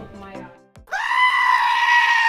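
Background music fades out, then about a second in a black-faced sheep gives one long, loud bleat held at a steady pitch.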